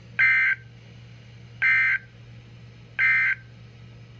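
Three short bursts of EAS/SAME digital data, the End of Message code closing a NOAA Weather Radio Required Weekly Test, about a second and a half apart. They come through a Midland weather radio's speaker over a faint steady hum.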